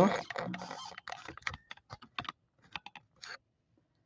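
A run of light, irregular clicks and taps, starting about a second in and thinning out near the end.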